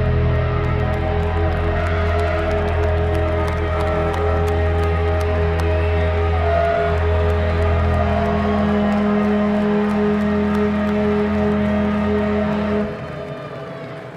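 Live rock band playing a slow, droning outro of long held guitar and bass notes, which stops abruptly about a second before the end.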